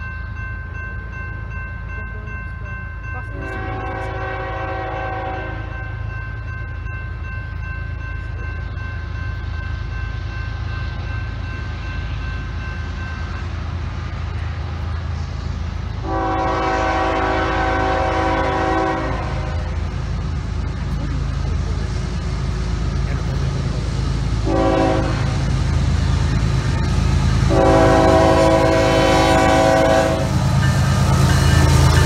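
Air horn of a CSX coal train's GE Evolution-series diesel locomotive blowing the grade-crossing pattern: two long blasts, a short one, then a long one. Under the horn, the low rumble of the approaching train grows steadily louder.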